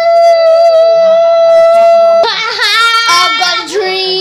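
A young girl's voice holding a long, high sung note for about two seconds, then wavering up and down and settling on a lower held note near the end.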